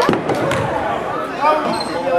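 A basketball bounces twice on a hardwood gym floor, about half a second apart, with people's voices chattering in the gym.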